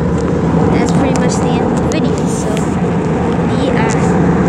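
Steady drone of a jet airliner's engines and rushing air, heard inside the passenger cabin in flight, with voices talking over it now and then.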